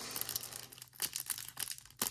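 Thin clear plastic wrapper of a trading-card promo crinkling in a series of short crackles as fingers pry and pull the stuck card out of it.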